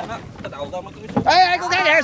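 Low wind noise on the microphone, then from about a second in a loud, high-pitched voice calling out.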